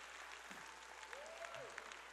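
Faint applause from a large congregation in an auditorium, soft scattered clapping during a pause in the preaching.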